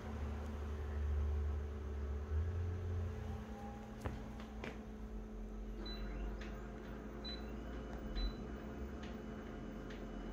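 Touch-panel beeps of a Konica Minolta C227 copier as on-screen buttons are pressed: three short, high single beeps in the second half, over the machine's steady low hum, with a couple of sharp clicks about four seconds in.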